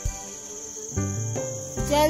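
Crickets chirping in a steady, high-pitched trill.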